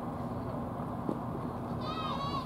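An animal call, high and wavering, begins just before the end over steady outdoor background noise with a low hum. A single sharp click comes about halfway through.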